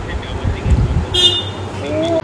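A short, high-pitched toot a little over a second in, like a horn sounding briefly, over low handling rumble. A voice starts near the end.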